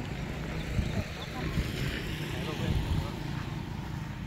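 A motorbike engine running steadily as it passes on a nearby dirt road, under a low rumble, with faint voices talking.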